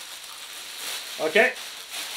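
Plastic bag rustling and crinkling steadily as a hand rummages through the paper tickets inside it.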